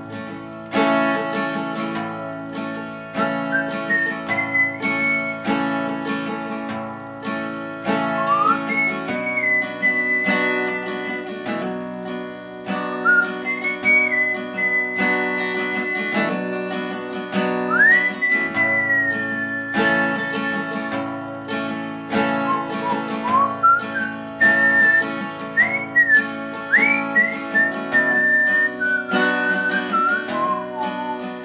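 Acoustic guitar capoed at the second fret, strummed in a slow, steady rhythm through G and A minor chord shapes (sounding as A and B minor). A single-note melody is whistled over it, sliding up and down in pitch.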